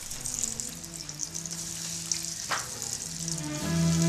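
Breaded mackerel fritters deep-frying in a pan of hot oil: a steady crackling sizzle. Soft music comes in under it and grows louder near the end.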